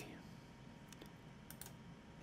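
Near silence: room tone with a few faint computer mouse clicks, two close together about a second in and two more about half a second later.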